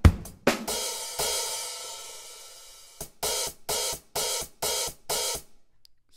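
Sampled acoustic drum kit played from pads: after a drum hit, an open hi-hat rings and decays for about two seconds, then is cut off abruptly by a closed hi-hat, followed by a run of short closed hi-hat strikes. The open and closed hi-hats share a choke group, so the closed hit chokes the open one's ring, as a hi-hat pedal would.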